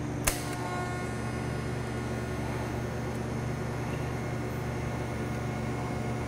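TIG welding arc on a carbon steel pipe joint: it strikes with one sharp crack about a quarter second in, then runs as a steady electrical hum with a faint whine while a tack weld is laid.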